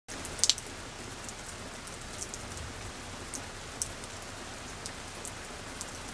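Steady rain: an even hiss with scattered sharp drop ticks, the loudest about half a second in.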